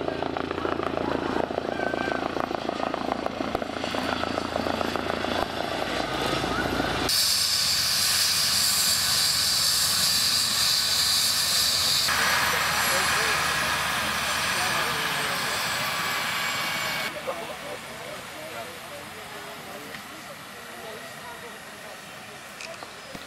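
Eurocopter EC135 air-ambulance helicopter: first the low pulsing beat of the rotor and engines in flight, then a loud high turbine whine with the rotor turning. The sound changes abruptly several times and drops noticeably in level for the last few seconds.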